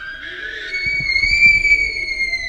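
A woman's long, very high-pitched shriek, rising at first and then held, with a few dull thuds underneath.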